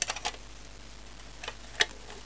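Light clicks and taps of a metal table knife against a plastic printer side cover as it is handled: a quick cluster at the start and two more clicks near the end.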